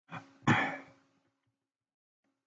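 A man clearing his throat: a short sound, then a louder one about half a second in, fading out within a second.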